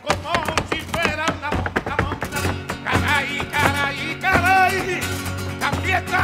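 Live flamenco music: Spanish guitar playing with sharp percussive strikes of hand-clapping (palmas) and the dancer's heel footwork, most dense in the first two seconds. A cantaor's voice comes in with wavering sung lines from about the middle.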